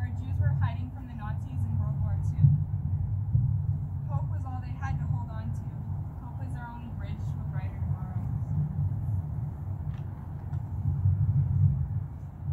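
A young reader's voice speaking a text aloud, faint and in short phrases, over a steady low rumble that is the loudest sound throughout.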